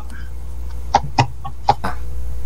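A handful of short, sharp clicks, about five in the second half, over a steady low hum.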